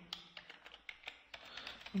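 Computer keyboard typing: a run of irregular single keystroke clicks as code is entered.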